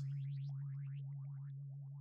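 Background sound effect under the reading: a steady low drone with a quick run of short rising chirps, about seven a second, fading away gradually.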